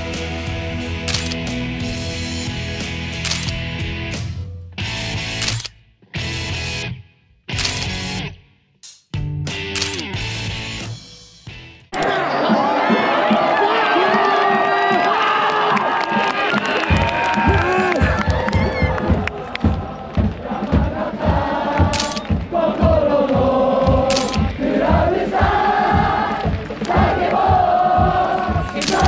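Background music that breaks up into short choppy bits with silent gaps. About twelve seconds in, a large crowd of football supporters takes over, singing a chant together over a steady beat of about two thumps a second: away fans celebrating a win at full time.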